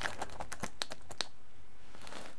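A quick run of light, sharp clicks and taps, about seven in the first second or so and then quieter, as a homemade tool is pressed into compost-filled plastic pots to firm the compost and make a planting hole.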